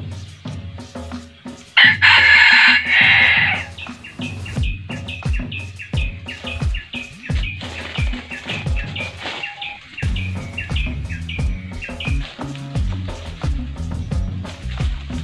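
Red junglefowl rooster crowing loudly once, about two seconds in, in two parts, over background music with a steady low beat. Short, high chirps follow for several seconds.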